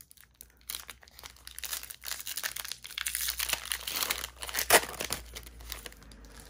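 Foil wrapper of a trading card pack crinkling and tearing as it is pulled open by hand: scattered crackles at first, growing denser and louder from about two seconds in, then dying away near the end.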